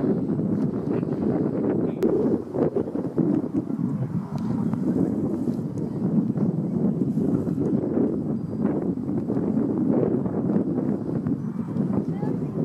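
Wind buffeting the microphone: a steady, uneven rumbling noise.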